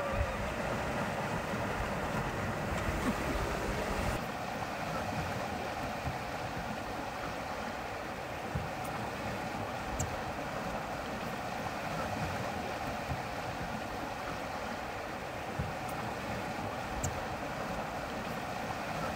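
Steady rush of wind and water under way on a sailboat, with wind buffeting the microphone for the first four seconds before it settles, and a few faint ticks.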